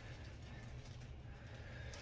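Faint swishing of a synthetic shaving brush (the Phoenix Artisan Accoutrements Solar Flare) being worked around a small bowl to build soap lather, over a steady low room hum.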